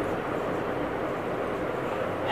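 Steady, even background noise like a hiss, with no distinct strokes or events.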